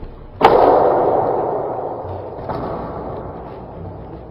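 A hard strike on a wooden wing chun dummy about half a second in, loud and fading out slowly over a couple of seconds, then a lighter knock about two and a half seconds in.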